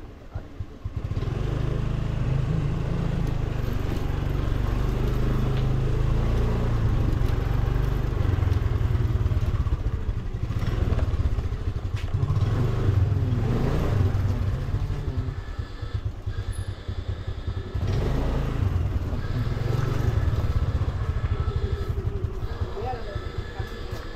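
A motor scooter's small engine pulling away about a second in, then running at low speed, its note rising and easing off with the throttle.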